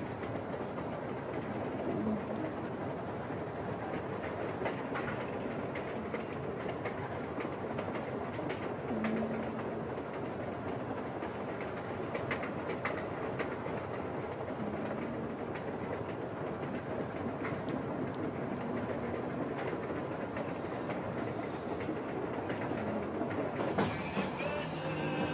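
A vehicle's steady running rumble, with faint scattered clicks and a few short low tones.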